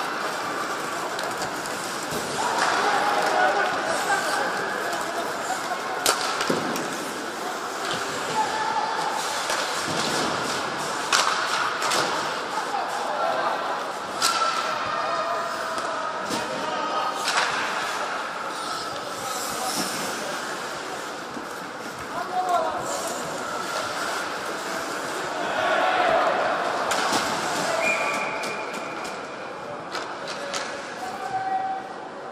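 Ice hockey game in an ice rink: sharp knocks of stick, puck and boards ring out several times over a steady background of indistinct voices echoing in the hall.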